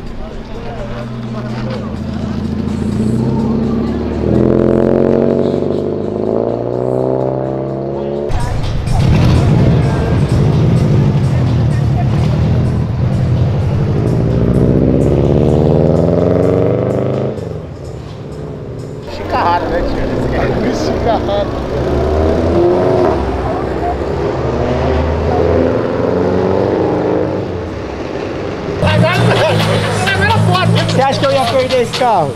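Twin-turbo Chevrolet LS V8 in a Subaru Impreza WRX STI accelerating hard in several pulls, its pitch climbing through each rev and dropping off between, over background music.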